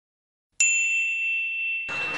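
Dead silence, then about half a second in a sudden bell-like ding sound effect that rings on in one steady high tone; it cuts off sharply near the end, leaving only a faint trace of the tone.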